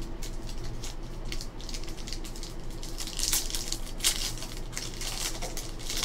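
Foil wrapper of a Panini Essentials basketball card pack crinkling and tearing as it is opened by hand, with louder crackles about three and four seconds in.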